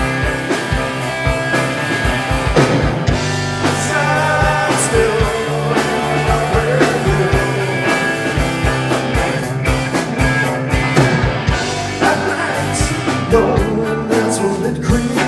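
Live rock band playing a blues-rock song: drum kit keeping a steady beat under electric guitars and bass guitar, with a lead part over the top.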